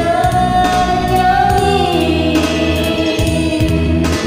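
A woman singing a long held note with vibrato over a karaoke backing track; the note rises slightly and then falls away about halfway through.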